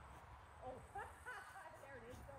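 A faint, indistinct voice in short snatches over a low rumble.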